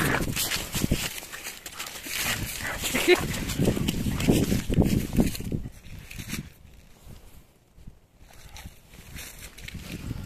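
A dog scuffling and romping on grass and dry leaves, with rustling and rough handling noise for about the first five seconds and a brief dog vocalization about three seconds in; then it goes much quieter.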